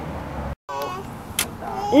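A steady low background hum that cuts off suddenly about half a second in, followed by a brief snatch of voice. A single sharp knock comes a little later, likely a shovel blade striking soil, and speech starts near the end.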